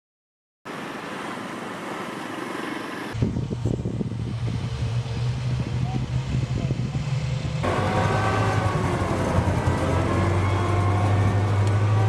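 Amphibious assault vehicles (AAV7 type) running their diesel engines, a steady low drone that sets in strongly about three seconds in and grows louder toward the end.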